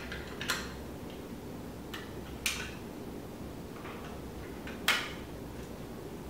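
Plastic SSD tray of an XCubeNAS clicking as a 2.5-inch SSD is pressed into it, the tray's pins snapping into the holes on the drive's sides: a few sharp clicks, the loudest about five seconds in.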